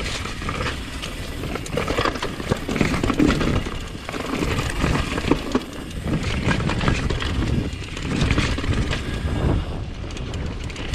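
Mountain bike riding fast down a rocky dirt trail: tyres crunching and rolling over dirt, rock and dry leaves, with the bike clattering in quick knocks over the bumps, under a steady rush of wind noise.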